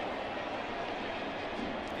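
Steady murmur of a ballpark crowd, with no single sound standing out.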